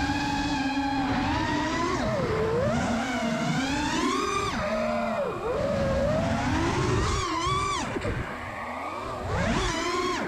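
Freestyle FPV quadcopter's brushless motors whining, flying on Betaflight 4.0.6 default settings. The pitch holds steady for about the first two seconds, then swoops down and up again and again with the throttle, with quick sharp climbs about four and seven seconds in.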